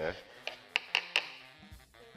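A kitchen knife cutting through cooked prawns onto a plastic chopping board: four quick, sharp clicks of the blade meeting the board in the first half.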